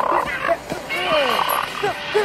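A dog growling with a toy in its mouth, with a man shouting over it.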